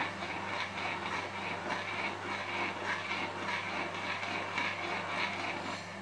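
A spoon stirring thick curry-leaf porridge in a granite-coated pot, with faint irregular scrapes and ticks over a steady low hum.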